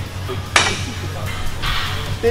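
A gym leg extension machine clanks once, sharply, about half a second in, over background music. A short hiss follows near the end.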